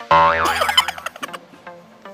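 A cartoon 'boing' sound effect: a loud springy tone that starts suddenly, wobbles in pitch and fades within about a second. It plays over light background music of evenly paced plucked notes.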